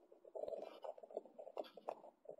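A large black bird scrabbling its feet on a lamp cover and flapping its wings as it takes off: a quick, irregular run of faint scratchy knocks and rustles.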